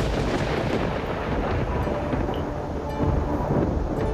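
A long, steady thunder-like rumble from a TV drama's sound effects, with faint music tones beneath it.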